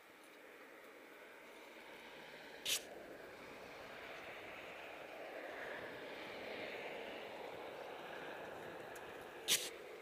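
A vehicle passing on the highway below: a steady rush of tyre and engine noise that slowly builds to a peak in the middle and eases off a little. Two short sharp clicks come about three seconds in and again near the end.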